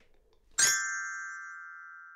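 A glockenspiel's metal bar struck once about half a second in, a bright bell-like note ringing and slowly fading: the cue to turn the page.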